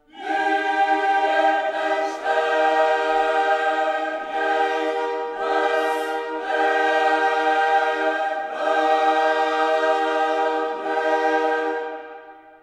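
Dramatic background music: a choir singing long held chords that change about every two seconds.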